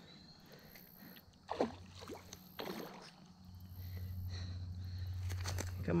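A hooked bass splashing in shallow water at the bank, with two short sloshes in the first few seconds, then a steady low hum that builds toward the end.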